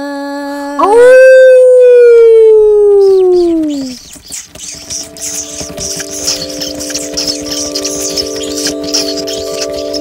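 A single long howl that leaps up in pitch and then slides slowly down for about three seconds, the loudest sound here, cutting off a held sung note. After it comes a scratchy, crackling noise over several sustained bell-like tones.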